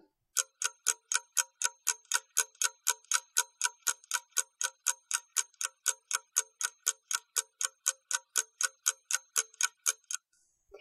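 Clock-ticking sound effect: a rapid, even run of sharp ticks, about four or five a second, timing the pause given for the exercise. It starts just after the speech and stops just before the talk resumes.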